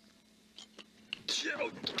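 A few faint clicks, then just over a second in a sudden scuffle of noise and a cry of "Oh" as the person filming slips and falls on the ice.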